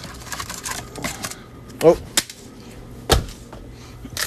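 Candy bars being pulled from a shelf display box: rapid clicking and rustling of wrappers and cardboard, then a sharp click and a louder knock near the end.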